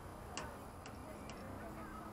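Three short, sharp clicks about half a second apart, over faint distant voices.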